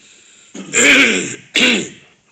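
A man clearing his throat with two coughs about a second apart, the first longer and the second short.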